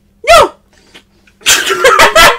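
A man's voice: a short, loud hiccup-like yelp about a quarter second in, then from about a second and a half a loud, strained run of wordless cries.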